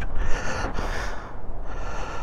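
A man breathing close to the microphone, two audible breaths, one near the start and one near the end, over a low steady rumble.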